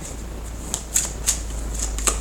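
A deck of tarot cards being handled and shuffled in the hand: a few separate crisp flicks and ticks of card against card.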